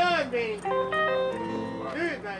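Live band on stage: a voice calls out at the start, then an instrument plays a short run of held notes that step between pitches, over a steady amplifier hum.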